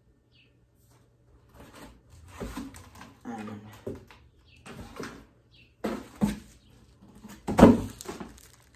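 A cardboard shipping box being handled and opened: irregular rustles, scrapes and knocks, with the loudest knock near the end as a plastic bottle is lifted out.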